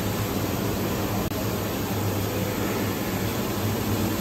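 A steady mechanical drone with a low hum underneath, as from a running machine such as a fan or blower.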